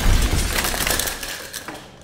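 A loud, noisy crash that fades away over about two seconds.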